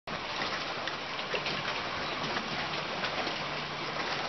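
Small waves lapping and splashing against the dock and boat hull: a steady wash of water noise with little splashes scattered through it.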